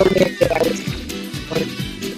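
Background music with a steady beat, with a sliding tone that falls in pitch near the start.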